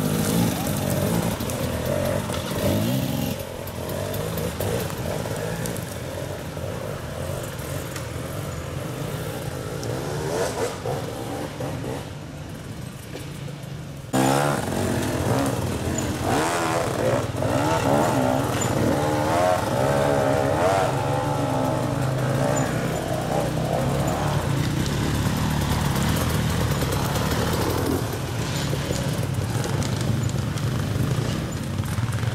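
Enduro dirt bike engines revving up and down under load as riders climb a loose, rocky slope, the pitch rising and falling with the throttle. About halfway through the sound jumps abruptly to a louder stretch of revving.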